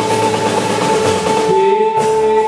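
Live band music on stage: a held note sustains over the drums. The top end drops away briefly near the end.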